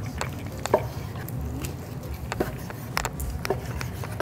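Kitchen knife slicing cooked beef shank into thin slices on a wooden cutting board. The blade makes short, irregular knocks against the board.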